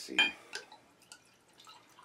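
Liquid poured from a bottle into a drinking glass: a faint, uneven trickle.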